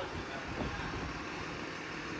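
Large forklift's engine idling steadily, with a little wind on the microphone.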